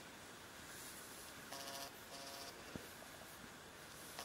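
Pet rabbit softly grinding its teeth (tooth purring) while being stroked, the sign of a happy, relaxed rabbit. Faint, with two short buzzy bouts about halfway through.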